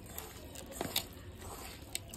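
Hands squishing small fish, tomato and spice marinade together in a steel bowl, a wet squelching with a couple of sharper ticks about a second in and near the end.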